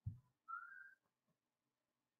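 Near silence during a pause in speech. It holds a faint low thump at the very start and, about half a second in, one short, faint, slightly rising whistle-like tone.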